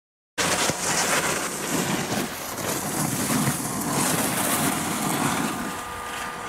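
Steady rushing noise of wind on the microphone mixed with the scrape of edges sliding over packed snow while skiing down a groomed slope, starting abruptly about half a second in.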